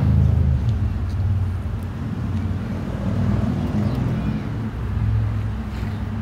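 Low, steady motor hum with a rumble, swelling and easing a little in level, with a few faint clicks.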